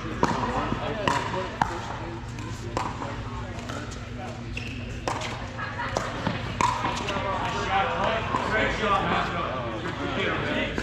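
Pickleball paddles hitting a plastic ball during a rally: sharp, irregular pops, several in the first few seconds and more a few seconds later, over chatter in the hall.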